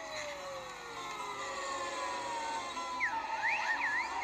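Slide whistle playing a long, slow falling glide, then about three seconds in, quick swoops up and down in pitch like a siren.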